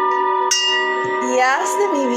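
Soft meditation music of sustained held tones, with a bell struck once about half a second in and ringing on as it fades.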